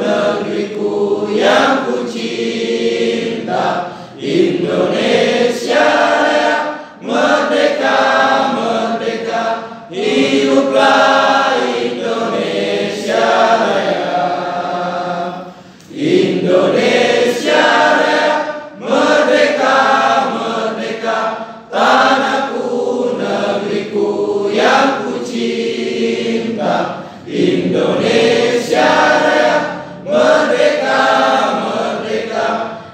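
A crowd of people singing a ceremonial song together in unison, in phrases with brief breaks between them.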